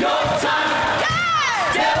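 Church congregation singing a gospel chorus with the band. About a second in, one worshipper lets out a loud, long shout that rises and then falls in pitch over the singing.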